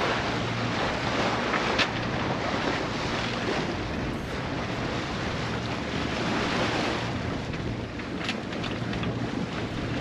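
Steady wind on the microphone over the rush of sea water along the hull of a sailboat under way.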